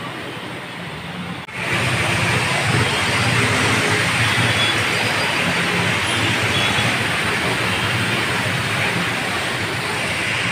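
Steady rushing noise of motorbikes and cars wading through a flooded road, their tyres throwing up water. It gets suddenly louder about a second and a half in and then holds steady.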